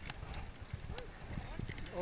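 Mountain bike rolling over a rough gravel and dirt track, the tyres crunching and the bike rattling with irregular knocks, over a low rumble.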